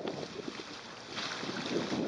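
Wind rushing over the microphone on the deck of a boat under way at sea, with the noise growing louder a little over a second in.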